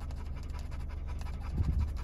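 Dogs panting with open mouths, tired out from running around, over the low steady hum of a car interior; a brief low bump comes near the end.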